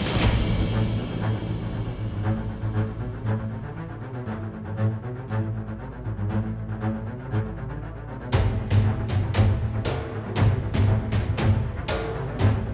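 Background music that swells up into a hit at the start, then about eight seconds in heavy percussion comes in, striking about three times a second.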